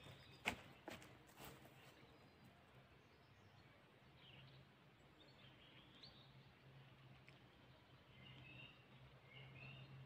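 Near silence: quiet outdoor ambience with a faint steady low hum, a few soft clicks in the first second or so, and scattered faint bird chirps in the second half.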